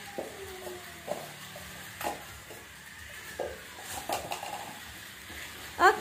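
Small battery-powered toy cars running along a plastic track: a faint, steady rattling whir, with several short sharp clicks.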